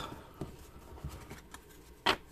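Faint handling noise of a glossy trading card being turned over between the fingers: a light rubbing with a few soft ticks.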